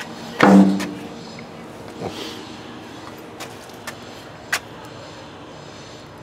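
A single short knock about half a second in, followed by a few light, sharp clicks scattered through the rest, over a steady low background noise.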